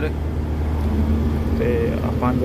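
Steady low drone of a diesel truck's engine and tyres heard from inside the cab while driving at road speed. A man's voice starts near the end.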